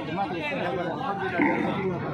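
Background chatter of several men's voices talking over one another, with no single clear speaker.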